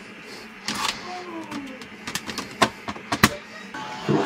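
Sharp plastic clicks and knocks as shoes are put away into stacked clear plastic drop-front shoe boxes, several clacks in quick succession in the second half.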